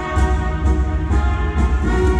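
Ballroom competition dance music with a steady beat of about two beats a second, played over the hall's loudspeakers for the dancing couples.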